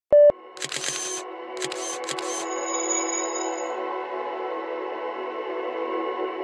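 Logo-intro sound design: a short, loud beep at the very start, then two clusters of camera-shutter clicks in the first two and a half seconds. Under them a sustained synthesized chord holds steady.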